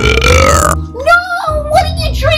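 A woman burps once, a loud, rough burp lasting under a second, after gulping carbonated cola.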